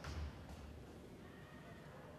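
Near-quiet pause in a cello and piano recital: faint room tone, with one soft low thump right at the start.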